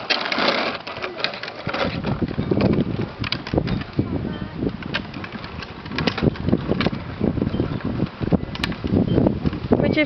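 Hard plastic wheels of a toddler's ride-on trike rolling over rough asphalt: a continuous, irregular rattling clatter.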